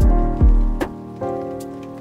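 Background music with a slow beat: deep kick drums and sharp drum hits under sustained keyboard chords.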